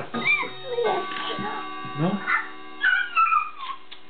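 A toddler whining in high, wavering cries that fall in pitch near the end, sounding like a whimpering dog.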